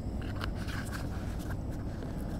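A few faint clicks of a plastic cooking-oil bottle being handled as oil is poured into a frying pan, over a steady low rumble.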